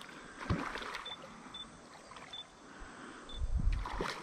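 A hooked barramundi splashing and churning at the water's surface as it is played on a fishing rod. There is a short dull thump about half a second in and a louder low rumble near the end.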